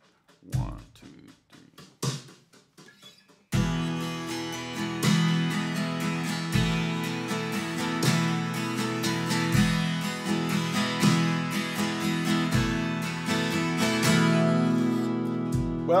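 A drum backing track plays a sparse kick and snare beat, with the kick falling about every three seconds. About three and a half seconds in, a 12-string acoustic guitar starts strumming full ringing chords in a 6/8 groove over the beat.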